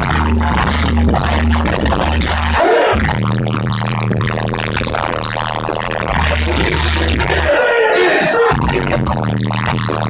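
Live hip-hop concert music through the venue's PA, heard from within the crowd: a loud beat with deep sustained bass notes that drop out briefly about three seconds in, and a vocal over it at times.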